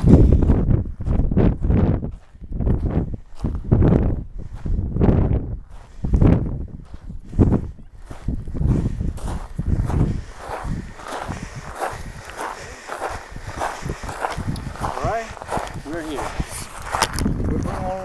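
Footsteps crunching on loose volcanic cinder at a steady walking pace, about one or two steps a second.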